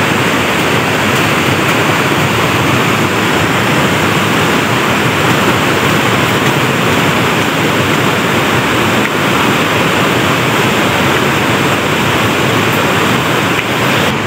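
Fast-flowing mountain river rushing steadily and loudly.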